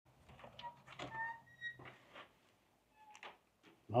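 A brass doorknob being turned and a motel-room door opened: a few faint clicks and knocks of the latch and door, with a brief squeak about a second in.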